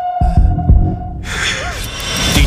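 Trailer sound design: deep bass thumps about three times in the first second, like a heartbeat, under a steady hum. A fuller wash of music comes back in just past the middle.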